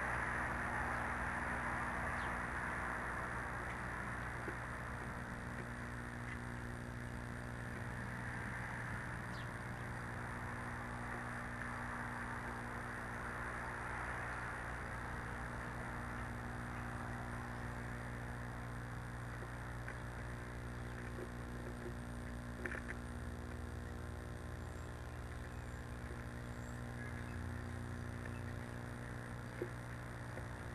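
Steady low hum with a hiss of background noise, fading a little after the first few seconds, and a few faint short clicks in the second half.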